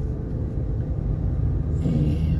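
Steady low rumble of a moving car, engine and road noise, heard from inside the cabin while driving.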